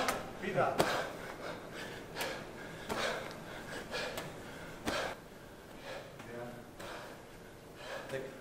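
A man breathing hard during wall-ball shots, with a few faint thuds of the 14-lb medicine ball at irregular intervals.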